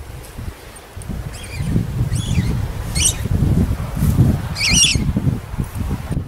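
A bird giving four short, high chirping calls over a low, uneven rumbling on the microphone.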